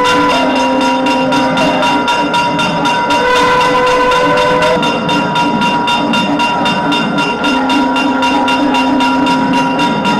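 South Indian temple music: a nadaswaram playing long held, slowly shifting notes over a drone, with a steady run of drum strokes.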